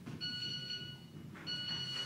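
Mobile phone alert tone: two long, steady, high-pitched beeps, the second starting about a second and a half in.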